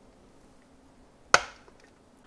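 A single sharp clack of metal kitchen tongs about a second and a half in, ringing briefly, against faint quiet room tone.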